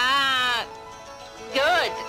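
A woman's voice making two drawn-out, bleating cries, the first about half a second long and the second shorter, rising and falling, about a second and a half in, over sustained background music.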